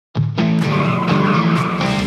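Car tires squealing, with the car's engine running, over loud rock music.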